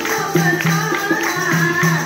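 Live devotional bhajan: women singing a melody to a dholak drum beat, with hand clapping keeping the rhythm.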